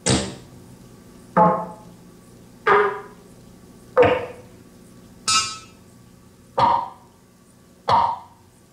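DIY synthesizer playing a slow sequence of percussive notes, seven in all, about one every 1.3 seconds. Each note strikes sharply and dies away quickly, and its pitch and tone change from note to note.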